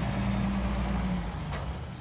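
A steady low engine drone in the background, fading somewhat over the last second.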